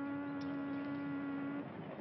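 A ship's horn sounding one steady low blast that cuts off about one and a half seconds in, over a continuous background hiss.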